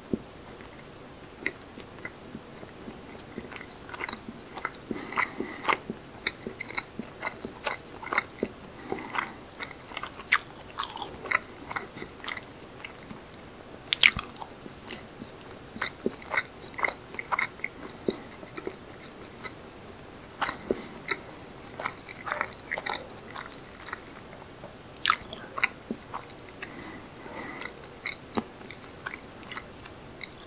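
Close-miked chewing of a soft, spongy fermented rice cake (janggijitteok): wet mouth smacks and clicks at irregular intervals, with one louder smack about halfway through.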